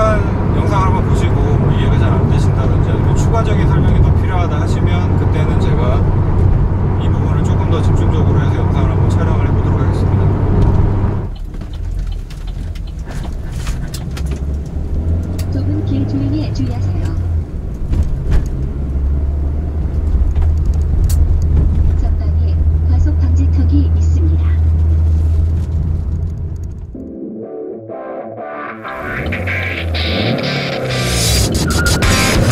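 Cabin noise of a Chevrolet Aveo 1.6 manual hatchback's four-cylinder engine and tyres: a loud steady hum while cruising, dropping suddenly about eleven seconds in to a quieter, lower engine hum at low speed. Music comes in near the end.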